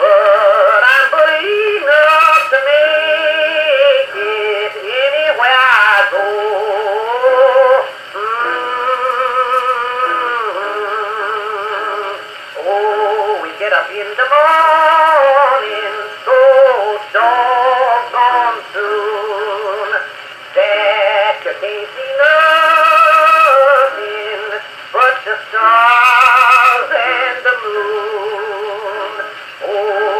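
A 1925 Edison Blue Amberol cylinder of old-time country music playing on an Edison cylinder phonograph through its horn. The sound is thin and narrow, with no bass, as acoustic-era recordings are.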